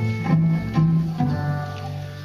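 Live acoustic ensemble music led by an oud, plucked notes in a melodic line over low string notes.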